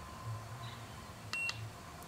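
Handheld TOPDON ArtiLink 201 OBD-II code scanner giving one short, faint, high beep as a button on its keypad is pressed, with a light click, a little past halfway.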